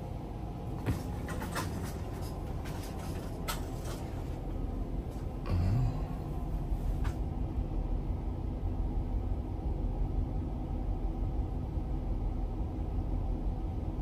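Steady low rumble of a towboat's diesel engines heard from the wheelhouse, with a few sharp clicks in the first seconds and a short low thud about five and a half seconds in.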